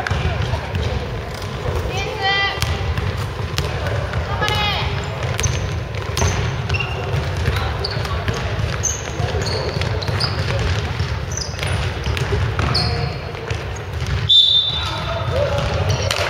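Basketball game on a wooden gym court: the ball bouncing as it is dribbled, sneakers squeaking in short high chirps and players calling out, all echoing in the hall. A brief loud high-pitched squeal stands out about a second and a half before the end.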